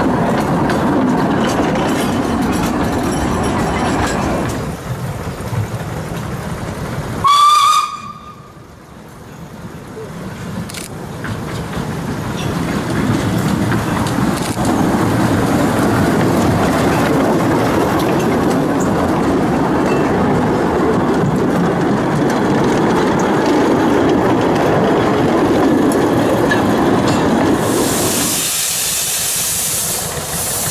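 A narrow-gauge steam train running past on the track, with a short, sharp steam whistle blast about seven seconds in. After that a small narrow-gauge steam locomotive draws near and passes with its train, growing steadily louder, and near the end steam hisses.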